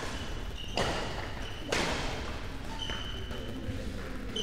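Badminton rally: two sharp racket hits on the shuttlecock about a second apart, each ringing on in the hall's echo, with a few short high squeaks in between.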